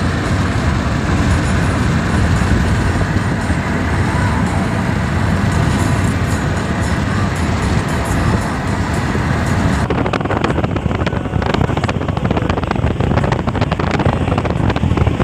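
Steady road and engine noise of a moving vehicle heard from on board. About ten seconds in, the sound turns duller and choppier, with rapid buffeting on the microphone.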